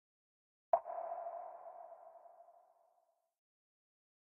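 A single electronic ping: an end-card logo sound effect struck about a second in, a mid-pitched ringing tone that fades away over two to three seconds.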